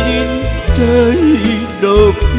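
A man singing through a microphone over a karaoke backing track, with a wavering melody line above a steady, pulsing bass beat.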